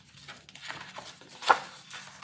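Light handling noises of paper and a glue bottle on a cutting mat: soft paper rustles and small taps, with one sharp tap about one and a half seconds in.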